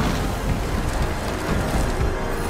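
A loud, continuous rumbling roar of action sound effects, dense and noisy with a heavy low end and no single clear event.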